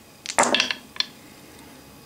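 Four wooden game dice thrown into a felt-lined wooden dice tray: a quick clatter of knocks about half a second in, then one last sharp click at about a second as they come to rest.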